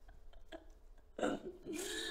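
A woman sobbing: a catching breath about a second in, then a choked, wavering cry near the end.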